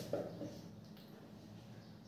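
Faint marker strokes on a whiteboard over quiet room tone, with a short soft sound just after the start.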